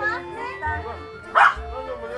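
Background music and the voices of a gathering, with one short dog bark about one and a half seconds in.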